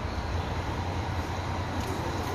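Scania K420 coach's diesel engine idling, a low, steady hum.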